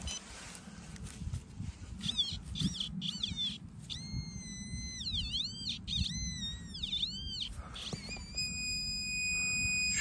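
Metal detector signal tones: warbling electronic beeps that sweep up and down in pitch from about two seconds in, then one steady tone held near the end, homing in on a buried target that turns out to be a piece of lead. Low rustling of soil being handled underneath.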